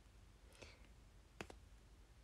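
Near silence with a few faint clicks, the sharpest about a second and a half in.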